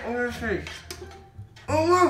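Boys' voices exclaiming and laughing in drawn-out, rising and falling syllables. The first comes right at the start and another near the end, over a steady low hum.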